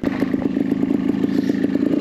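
Trials motorcycle engine idling steadily, with knocks and scraping as the camera is handled and turned.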